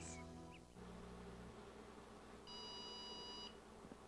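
A clothes dryer's end-of-cycle signal: one steady electronic beep lasting about a second, sounding about two and a half seconds in, telling that the load is done. Before it, the tail of a commercial jingle fades out in the first second.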